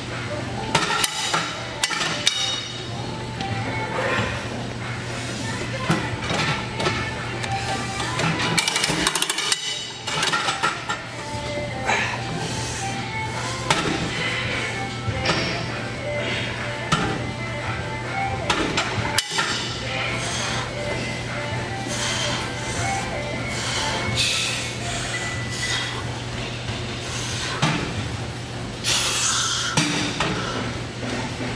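Background music with repeated metallic clinks and clanks from the weight stacks of gym leg machines being worked through hip abductor sets.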